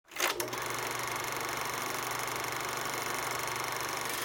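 Logo intro sound effect: a couple of sharp clicks at the start, then a steady, fast mechanical clatter that holds at an even level.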